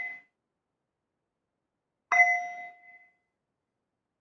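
A small metal meditation bell or chime struck by hand, giving clear ringing tones. The tail of one strike dies out at the very start, and a louder strike comes about two seconds in and fades within about a second. It marks the close of the meditation.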